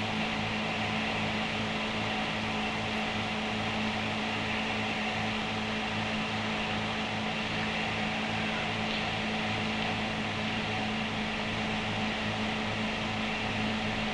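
A steady low electrical hum with several steady tones over even hiss, unchanging throughout: the background noise of an old film soundtrack, not the sound of the machine on screen.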